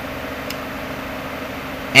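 Steady background hum and hiss of a room, with a faint click about half a second in; a man's voice starts right at the end.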